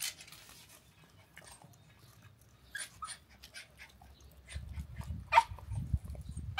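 A dog giving a few short, high cries over the second half, the last one the loudest, with a low rumble near the end.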